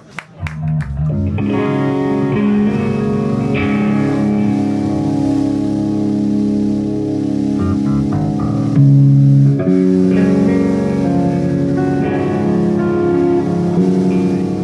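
Electric guitar playing ringing, sustained chords and notes through an amplifier, coming in about a second in. It swells briefly louder about nine seconds in.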